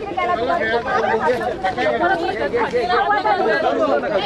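Several people talking loudly over one another, a jumble of overlapping voices as protesters and police officers crowd around a detained protester.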